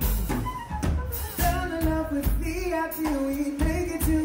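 Live funk band playing: drum kit, electric bass, electric guitar and keyboards, with a male lead singer's voice over the groove.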